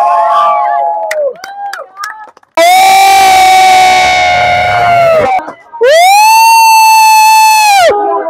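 Celebratory shouting: a few short shouts, then two long held 'ooo' cheers a few seconds each, steady in pitch and falling away at the end.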